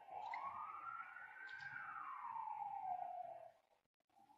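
A faint siren wailing, its pitch rising smoothly for under two seconds and then falling away until it fades out about three and a half seconds in.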